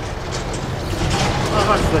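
Steady low background rumble, with a man's voice starting near the end.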